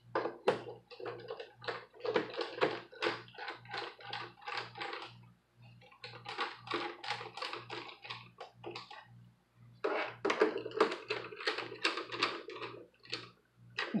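Plastic rear cover of an HP Pavilion 20 all-in-one PC being pressed into place around its edge. It makes a rapid series of small plastic clicks and taps as its inner hooks snap in, in three runs with short pauses about five and nine seconds in.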